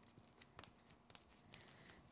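Near silence, with a few faint soft ticks as a ball stylus presses die-cut card leaves into a foam shaping mat.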